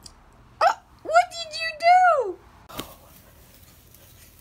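A baby's high-pitched squeals: a short yelp, then a longer held squeal that falls away at the end. A brief knock follows.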